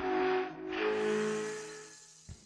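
Podcast intro jingle: a held chord of steady tones under an airy, hissing whoosh that swells twice, fading out near the end.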